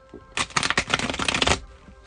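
A deck of cards shuffled by hand: a rapid run of card flicks lasting about a second, stopping suddenly.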